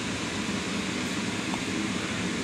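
Steady whirring noise of an inflatable bounce house's electric blower fan running.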